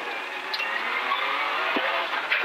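Toyota GR Yaris rally car's turbocharged three-cylinder engine running under load, heard from inside the cabin together with tyre and gravel noise, growing louder over the two seconds.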